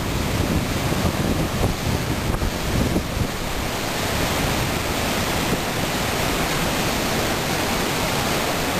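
Whitewater rapids of a big river rushing steadily over rock close by, a constant loud roar of water.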